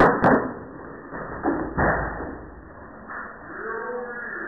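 Skateboard clattering on a tiled floor during flatground tricks: a sharp board slap right at the start, another just after, then more knocks and a hard thud about one and a half to two seconds in.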